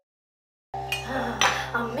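After a moment of silence, dishes and cutlery clink at a meal table, a few sharp clinks of a spoon against bowls, over soft background music with a steady low hum.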